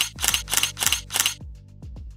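A quick run of about six camera-shutter clicks, used as sound effects as photos pop onto the screen, stopping about one and a half seconds in. Under them runs background music with a steady kick-drum beat.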